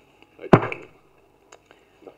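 A single sudden thump close on the microphone about half a second in, followed by two faint clicks.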